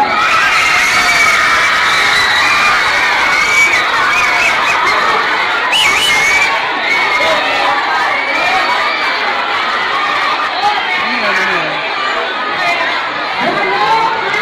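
A crowd of schoolchildren shouting and cheering together, a dense din of many high voices that breaks out at the start and keeps up throughout.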